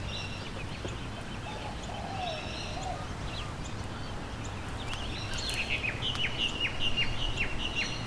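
Several birds calling and chirping over a steady low hum, with a lower warbling call a couple of seconds in. A quick run of short, falling chirps near the end is the loudest part.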